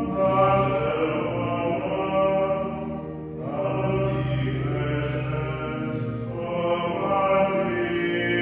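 Liturgical chant sung in long held notes by a group of men's voices, with a short break about three seconds in.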